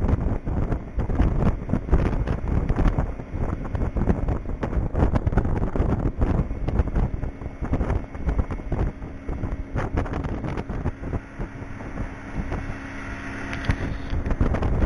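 Wind buffeting the microphone aboard a motorboat, in irregular gusts, with a steady low engine hum showing through in the second half.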